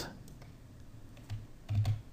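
Quiet room tone with a few faint, short clicks from operating the computer, the loudest pair near the end.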